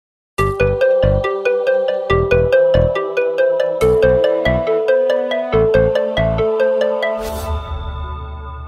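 Short intro jingle: a quick run of bright, bell-like notes, about four a second, over a bass beat. Near the end it closes with a whoosh and a low rumble as the last notes ring on.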